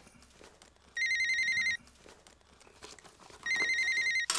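Mobile phone ringing with a trilling electronic ring tone, twice: one ring about a second in and the next starting near the end.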